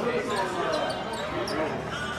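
Basketballs bouncing on an arena court during a team practice, with voices echoing in the large hall and several short high squeaks.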